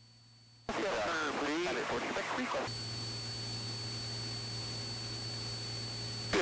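Aircraft headset and radio audio: a short stretch of muffled talk, then a steady hiss with a low hum and a thin high steady tone as the radio or intercom channel opens, carrying cockpit noise.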